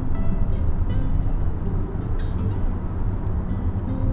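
Steady low rumble of tyres and engine from inside a car driving along a highway.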